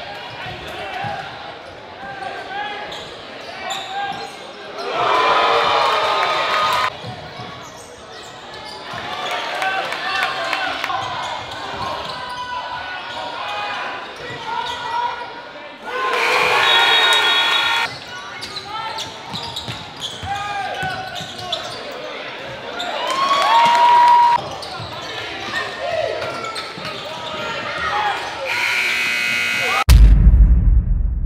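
Gym game sound at a basketball game: crowd voices echoing in the hall, a ball bouncing on the hardwood floor, and three loud bursts of crowd cheering that start and stop abruptly.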